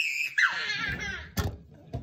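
A young girl's high-pitched squealing laugh that falls in pitch, followed about a second and a half in by a short knock.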